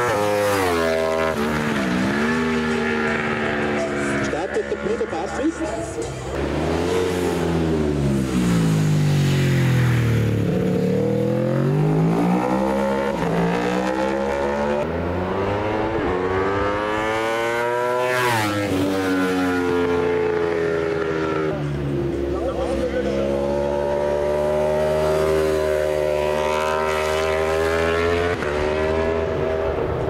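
1000 cc superstock racing motorcycles at full race pace. Each engine's note climbs in steps as it shifts up and drops away under braking and downshifts, over several passes.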